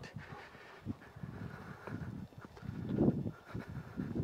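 A man and a leashed dog walking on a paved road: soft, irregular footstep taps and scuffs, with a brief louder sound about three seconds in.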